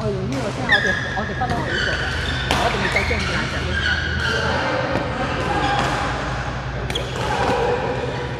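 Badminton rally: several sharp racket hits on a shuttlecock, echoing in a large hall, with voices.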